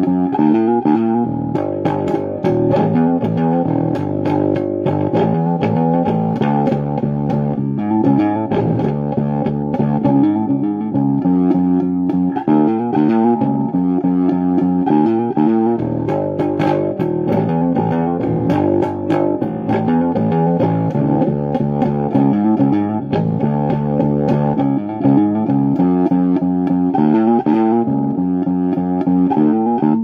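Fretless electric bass played with the fingers, one unbroken riff of notes following each other steadily.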